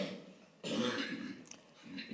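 A person clearing their throat once, a rough cough-like sound lasting well under a second, starting about half a second in.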